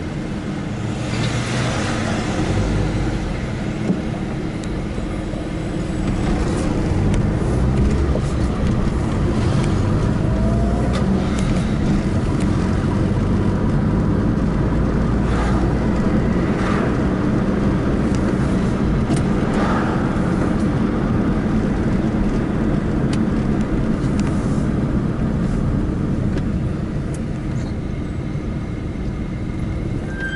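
Car driving on city streets, heard from inside the cabin: a steady low engine and road rumble.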